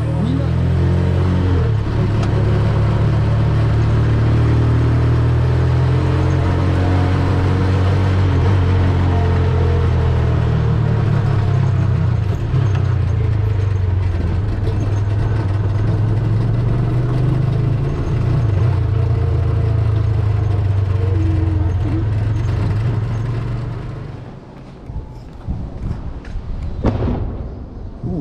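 A vehicle's engine running with a steady low drone while travelling, with road noise above it; it falls away near the end as the vehicle slows down.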